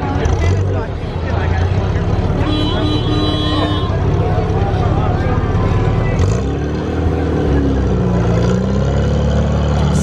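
Vintage Amphicar's rear-mounted four-cylinder engine running close by with a steady low note. About six seconds in, its pitch rises and changes as the car pulls away.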